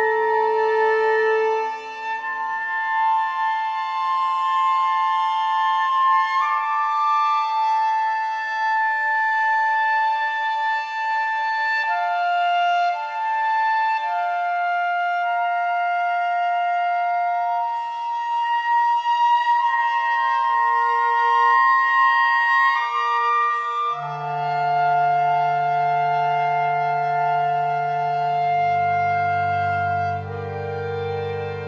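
Contemporary classical chamber music for clarinets and strings: long, overlapping held notes high in the range, shifting in slow steps. About 24 seconds in, low sustained notes enter underneath, and a deeper note joins near the end.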